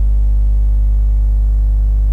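Steady low electrical mains hum with a buzz of overtones above it, loud and unchanging, with no other sound.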